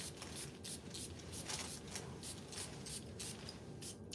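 A string of faint short hisses and rustles: a cologne atomizer being spritzed by hand, with clothing brushing a lapel microphone as the arm moves.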